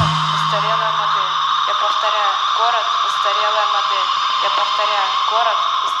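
A spoken-voice sample that sounds as if heard over a radio, thin and narrow, over a steady hiss and a constant high tone. The song's last bass note rings out under it for the first two seconds or so.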